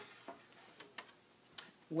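A sharp tap right at the start, then a few faint clicks and knocks, as a hand-held graph board is set down and handled.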